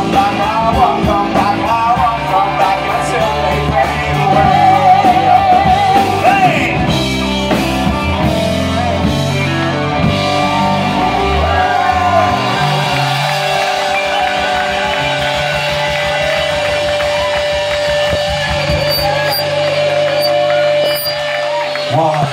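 Live rock band playing, with singing over guitar, keyboard, bass and drums. About eleven seconds in the bass and low end drop away, and a long held note carries on to the end.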